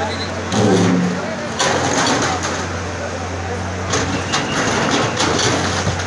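A CAT hydraulic excavator's diesel engine running steadily while its bucket breaks up a concrete shop front. Masonry cracks and crumbles in several bursts over a crowd's chatter.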